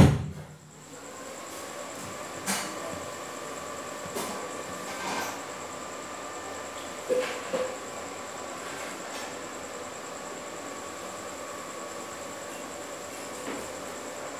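One loud thump at the very start, then a low steady hiss with a faint high whine and a few light clicks and knocks.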